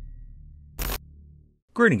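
Intro sound effects: the tail of a low boom dies away, and a short, sharp burst of noise like a camera-shutter click comes about a second in. A man's voice starts just before the end.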